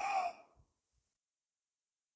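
A woman's short, faint sigh-like breath at the very start, falling slightly in pitch, then dead silence.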